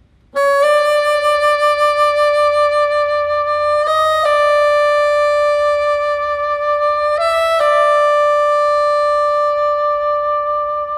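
Solo bassoon entering after a brief pause on a long, loud, high held note, twice flicked briefly up to a slightly higher note and back, the note sustained throughout.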